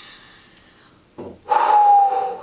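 A woman's quick breath in, then a long, forceful breath blown out through pursed lips with a faint whistling tone that sinks slightly: an exasperated blow.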